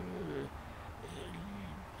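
A man's drawn-out hesitation sound, a long 'euh' that trails off about half a second in, followed by a fainter hummed 'mmm' about a second later.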